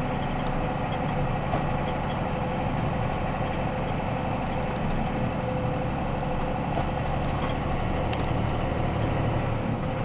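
Box truck driving at about 32 mph, heard from inside the cab: a steady mix of engine and road noise, with a few faint ticks.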